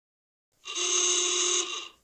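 A single steady pitched tone with many overtones, starting about half a second in and held for a little over a second before fading out.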